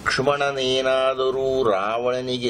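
A man chanting in a level, sustained tone, holding one note for over a second before his pitch slides and settles again near the end.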